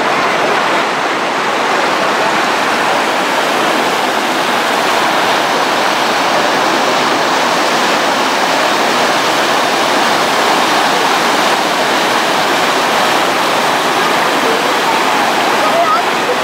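The Saale river in flood, fast brown water rushing and churning over a weir: a steady, loud rush of water with no let-up.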